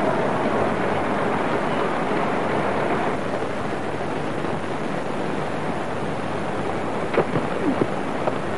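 Steady rushing background of an old TV cricket broadcast, with the ground's ambience and tape hiss, and a faint crack near the end as the bat strikes the ball.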